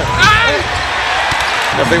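Game sound from a basketball court: a few quick sneaker squeaks on the hardwood just after the start, then steady arena crowd noise.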